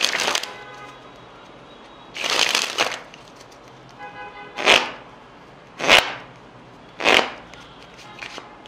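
A deck of playing cards handled in flourishes: cards sprung from hand to hand at the start and again about two seconds in, each a rush lasting under a second. Then three sharp card snaps follow, a little over a second apart, over faint background music.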